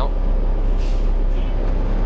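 Inside a New Flyer D40LF transit bus under way: its Cummins ISL diesel engine and Allison automatic transmission running with road noise, a steady low rumble through the cabin.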